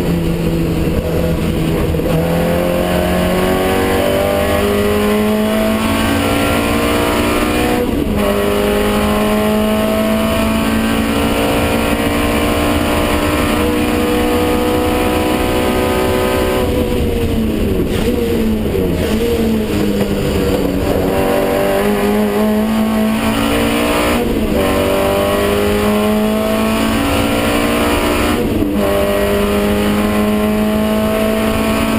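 Race car engine heard from inside the cabin, revving up through the gears with an upshift about eight seconds in. The revs then fall with downshifts under braking around the middle, and the engine pulls hard again with two quick upshifts in the last third.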